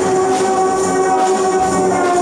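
Brass band playing long held chords.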